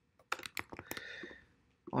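Typing on a computer keyboard: a quick run of sharp keystrokes in the first second while code is being edited.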